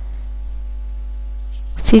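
Steady low electrical hum with a few faint steady higher tones over it, unchanging throughout; a woman's voice begins right at the end.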